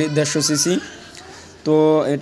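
A man talking, then a pause of about a second, then a drawn-out held vowel near the end.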